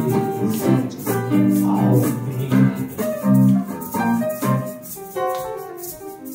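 Instrumental passage of live music: electric guitar and keyboard playing chords to an even rhythm of crisp, shaker-like strokes, with no singing.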